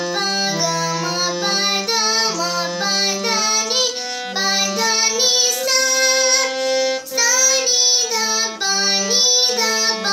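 A young girl singing a song while playing a harmonium. The reed organ's held notes change in steps under her voice.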